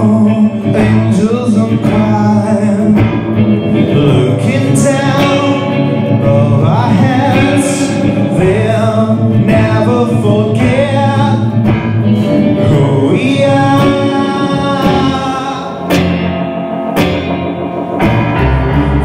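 Live music: a man singing a waltz, accompanied by electric guitar and keyboard.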